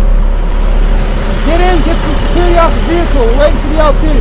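A steady low drone like a running vehicle engine. A raised, unintelligible voice comes in about a second and a half in.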